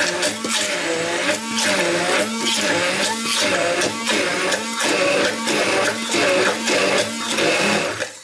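Haier immersion blender running in a tall cup, pureeing basil leaves in olive oil. Its motor pitch wavers up and down about twice a second, and it stops suddenly at the end.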